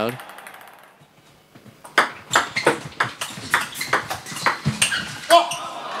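Table tennis rally: the ball clicking sharply off bats and table in quick succession, several strikes a second, starting about two seconds in.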